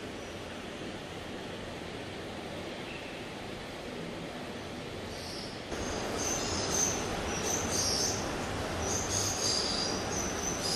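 Steady hissing background noise of an animal enclosure. A little past halfway the noise steps up and high chirping calls join it, typical of the birds and insects of a tropical zoo pavilion.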